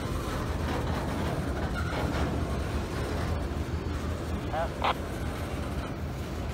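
Freight cars of a train, centerbeam flatcars and covered hoppers, rolling past with a steady low rumble of steel wheels on rail. A brief higher-pitched sound comes about five seconds in.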